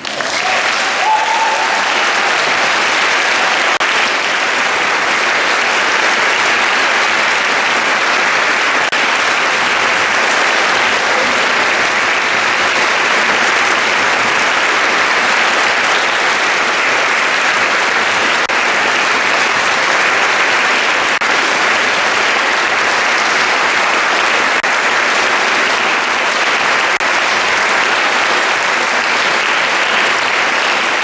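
Audience applause that breaks out at once and stays steady and loud throughout.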